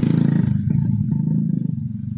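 A vehicle engine running close by, a steady low drone that fades gradually as it moves away.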